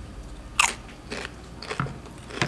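A crunchy chip being bitten and chewed close to the microphone: one sharp crunch about half a second in, then a few softer chewing crunches.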